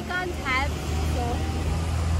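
Steady low rumble of street traffic, with a few words of a voice at the start.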